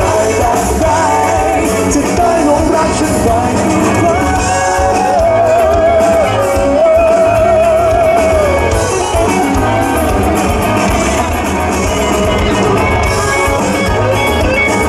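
Male singer performing a Thai pop song live, singing into a microphone while strumming an acoustic guitar. About halfway through he holds one long note with vibrato.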